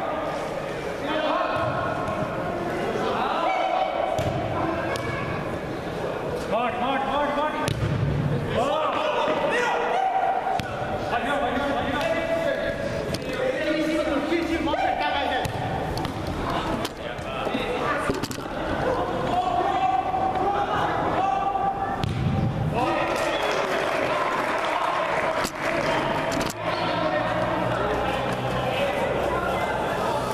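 Players shouting and calling across a large indoor football hall, with sharp thuds of the ball being kicked now and then.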